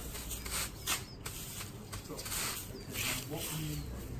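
Thatcher's leggett, a flat wooden dressing tool, striking up into the butt ends of straw thatch: a run of short strikes, roughly two a second, as the straw is dressed into place.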